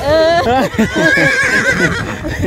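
A horse whinnying: one long, wavering high call lasting about a second in the second half, over people's voices and laughter.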